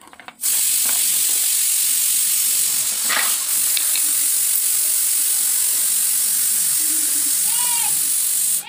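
A loud, steady hiss that starts abruptly about half a second in and cuts off suddenly at the very end, sharpest in the high treble.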